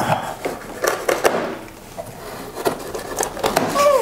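Plastic packing straps being cut and pulled off a large cardboard box: a scatter of short scrapes, snaps and clicks with the rustle of the straps and cardboard being handled.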